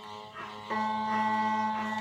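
Scottish smallpipes' drones striking in: a faint steady tone at first, then the full drone chord sounds about two-thirds of a second in and holds steady.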